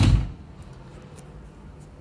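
A room door being pulled shut, one sharp click-thud of the latch at the very start, followed by quiet room tone.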